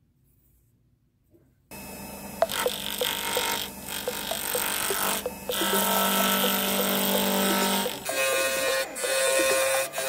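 Small wood lathe switched on about two seconds in and running at roughly 2300–2700 rpm, with a carbide turning tool cutting the spinning square amboyna burl pen blanks to round: a loud, harsh cutting noise over the motor, broken by a few brief pauses as the tool is lifted off.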